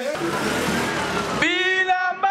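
Busy street traffic noise with motor vehicles. About a second and a half in, a man's voice cuts in, calling out loudly.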